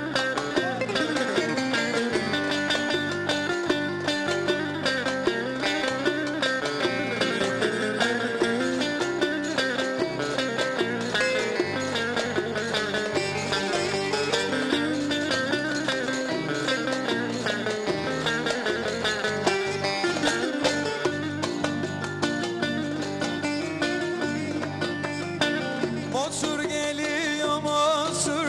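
Instrumental Ankara oyun havası (Turkish folk dance tune) played on bağlama, with fast plucked strokes over a steady darbuka beat.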